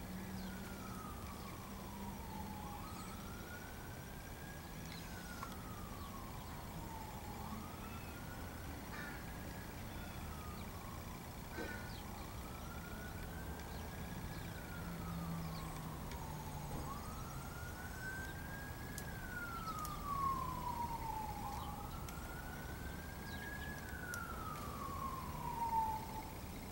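A siren wailing, its pitch slowly rising and then falling in repeated cycles of about four to five seconds each. A couple of brief knocks are heard, one about two-thirds of the way in and one at the very end.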